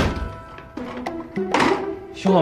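A front door thuds shut at the start, followed by light background music.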